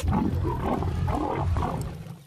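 Cartoon stomach rumble sound effect: a loud, low growling rumble lasting nearly two seconds that tails off near the end.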